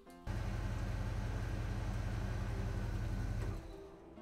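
Steady rushing sound effect with a deep hum beneath it, for a transition. It starts abruptly a moment in and fades out shortly before the end, with background music under it.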